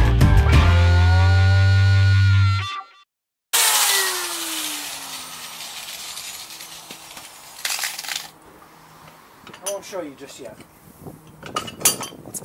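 Background music ends with its pitch sliding down, then after a brief silence an angle grinder fitted with a wire wheel winds down after being switched off, its falling whine fading over a couple of seconds. Light clinks and handling sounds from the steel mower blade in the bench vise follow near the end.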